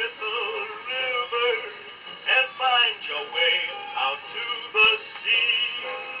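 A male singer with orchestra playing from a 78 rpm record on a portable gramophone. The sound is thin, with almost no bass, and there is one sharp surface click about five seconds in.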